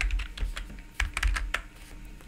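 Computer keyboard keys clicking as a short burst of letters is typed, several keystrokes close together around the middle.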